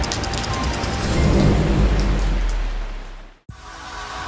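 Thunderstorm sound effect: a steady rain hiss with a deep thunder rumble that swells about a second in, then fades out to a moment of silence near the end, where soft music begins.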